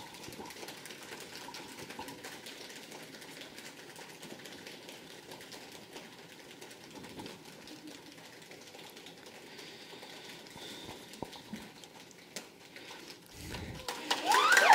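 Faint, continuous rapid patter of an improvised drumroll in a quiet room, with a couple of soft knocks near the end.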